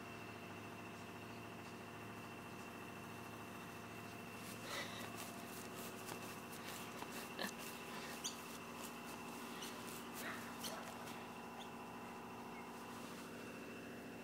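Jack Russell puppies giving a few faint squeaks and small yips, scattered among short clicks, starting about a third of the way in, over a steady low hum.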